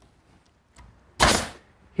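A six-penny finish nail being driven into a mitered pine frame corner: one loud, short shot a little over a second in, after a faint tick.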